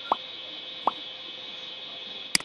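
Two short falling 'bloop' pop sound effects, about 0.8 s apart, from a subscribe-button animation, over a steady background hiss.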